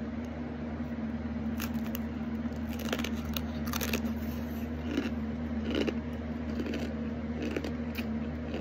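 Crunching of a hard, dry bagel crisp topped with tomato bruschetta as it is bitten and chewed: a string of separate sharp crunches a second or so apart. A steady low hum runs underneath.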